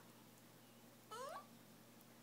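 Toy pinscher puppy giving one short whine that rises in pitch, about a second in.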